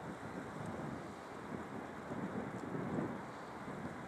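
Wind buffeting the microphone in uneven gusts, over the wash of the sea against the rocky shore.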